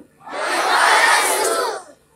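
Many children's voices speaking a phrase together in chorus. It swells and fades over about a second and a half, the assembled students repeating a line read out at the microphone.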